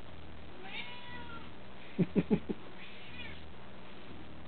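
Domestic cat meowing for food. A faint, falling meow comes about a second in and another shortly after three seconds, with a quick run of three or four short, louder sounds about two seconds in.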